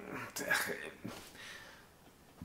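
A man chuckling softly: a few short, breathy laughs that die away.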